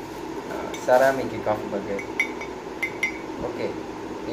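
A ceramic coffee mug being handled, giving a few light clinks in the second half, with a short stretch of a man's voice about a second in.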